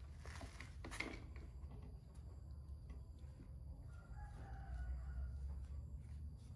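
A rooster crows once, about four seconds in, over a steady low hum. About a second in there is a short rustle with a sharp click.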